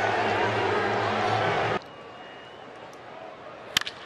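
Ballpark crowd noise with a low steady hum underneath, which cuts off abruptly less than two seconds in and gives way to a quieter stadium murmur. Near the end comes one sharp crack of a bat hitting a pitch.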